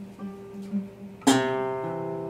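Acoustic guitars playing: a few soft picked low notes, then about a second and a quarter in a loud strummed chord that rings on and slowly fades.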